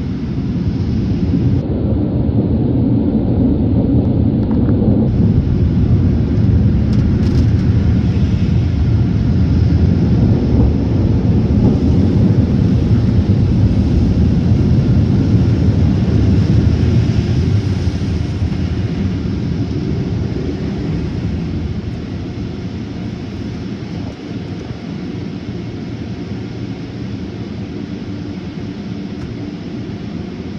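Automatic tunnel car wash heard from inside the car: cloth brushes and water spray beating on the body and windows make a loud, low rumble that eases off over the last third.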